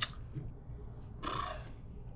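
Quiet room tone with a low steady hum, and one brief soft sound about a second in.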